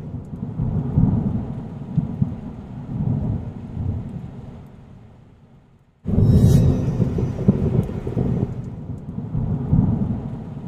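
Thunderstorm sound: low rolling thunder over rain. It fades away to silence by about six seconds in, then cuts back in suddenly at full level.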